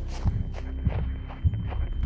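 Running footsteps crunching through dry fallen leaves, about three to four steps a second, over a steady low hum.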